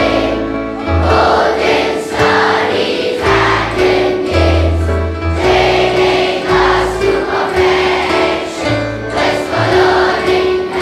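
A choir singing a slow song with instrumental backing, the voices holding long notes over a bass line that steps from note to note.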